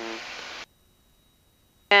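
Faint hiss of cabin noise through a headset intercom that cuts off suddenly about half a second in, leaving near silence with only a faint steady high tone until a voice comes back at the very end. This is typical of the intercom's squelch gate closing when nobody speaks.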